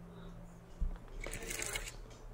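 Quiet handling noise as the battery tester and its clamp leads are moved about by hand: a soft knock just before a second in, then a short rustle.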